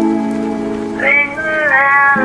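Background music: a sustained low chord, joined about a second in by a higher melody line that bends in pitch.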